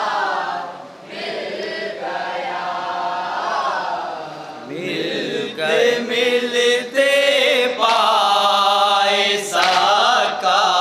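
Male voices chanting a nauha, a Shia mourning lament, in unaccompanied call-and-chorus. A single lead voice sings for the first few seconds, then from about five seconds in the chant grows louder and fuller as the group sings together.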